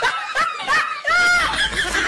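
A high-pitched snickering laugh in short rising-and-falling bursts, a comedy laugh effect laid over the shot of the grinning dog.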